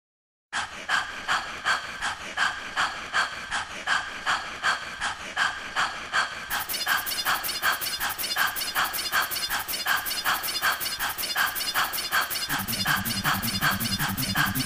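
Opening of a 1995 hard trance track: a filtered, pulsing electronic sound repeats evenly about three times a second, starting half a second in. At about six and a half seconds the treble opens up with dense fast high ticks, and a bass line comes in near the end.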